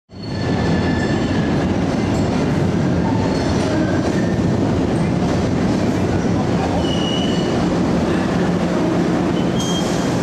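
MBTA Green Line trolley running through an underground subway station: a steady rumble from the cars and rails, with brief high squeals from the wheels a few times.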